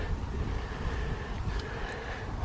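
Steady outdoor background noise: wind rumbling on the microphone, with a faint steady hum underneath.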